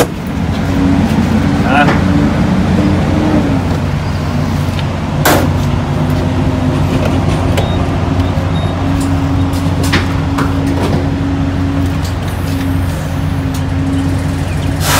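Semi-truck diesel engine idling steadily, with a couple of sharp knocks about five and ten seconds in.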